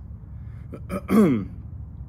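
A man clears his throat once, about a second in.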